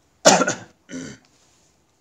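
A man coughing twice: a loud, harsh cough about a quarter second in, then a shorter, quieter voiced one about a second in.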